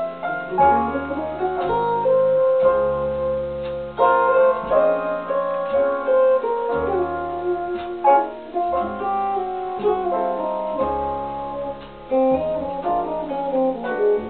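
Fernandes Stratocaster electric guitar played through a Clarus amplifier and a Raezers Edge speaker, picking a slow jazz ballad line. Low notes are held underneath the melody.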